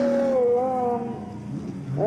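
A race caller's voice drawn out on one long, wavering syllable for about a second, then fading to quieter trackside background.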